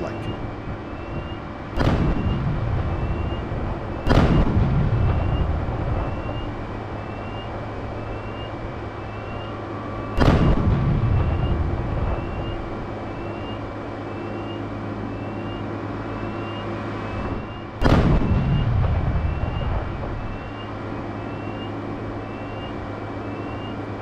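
Four separate explosion booms from a mine-clearing line charge (MICLIC) detonation, each hitting suddenly and rumbling away over a couple of seconds, the first a little softer than the rest. A steady low engine hum runs underneath.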